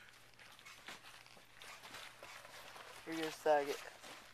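Faint crunching of packed snow under a snowboard and boots as a rider shuffles into position at the top of a backyard snow ramp, then a boy's voice near the end.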